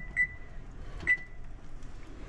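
Electric range's control-panel keypad beeping as its buttons are pressed to set a seven-minute boil timer: two short high beeps about a second apart, the second ringing a little longer.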